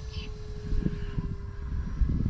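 Distant E-flite Cirrus SR22T RC plane's electric motor and propeller giving a faint, steady hum, under uneven low rumble from wind on the microphone.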